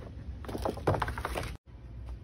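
Hands working a corrugated paper border trim against the inside wall of a cardboard box: a few short crinkles, scrapes and taps. The sound cuts out briefly near the end.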